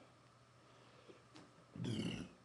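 A man belching once near the end: a short, low burp of about half a second, with a few faint ticks before it.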